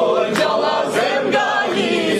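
Mixed group of men and women singing an Albanian folk song together, backed by plucked long-necked lutes (çifteli), with hand claps on the beat about twice a second.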